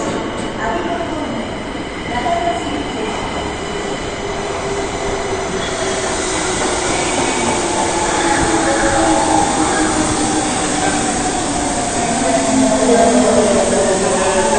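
Kita-Osaka Kyuko 9000 series electric train pulling into an underground station. The running noise of the wheels grows louder from about six seconds in, then a whine falls in pitch as the train brakes to a stop near the end.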